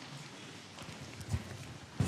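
A congregation getting to its feet: rustling, shuffling and scattered soft knocks of seats and feet, with one dull thump a little past the middle.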